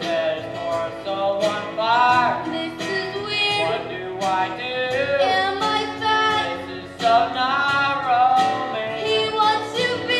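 A voice singing a musical-theatre song over instrumental accompaniment, the melody gliding and held in long sung notes.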